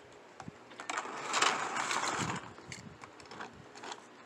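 Clear plastic blister packaging crinkling and clicking as it is handled and a diecast toy Jeep is lifted off it, loudest for about a second and a half in the middle.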